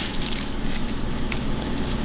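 Quiet handling of a red onion at a cutting board: faint rustling with a single soft click about a second in, over a steady low room hum.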